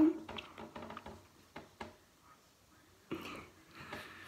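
Light taps and clicks of a phone being handled close up, then a short breathy rustle about three seconds in.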